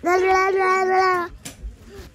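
A young child's voice holding one long, high, drawn-out note, like a sung or squealed call, for just over a second, followed by a brief knock.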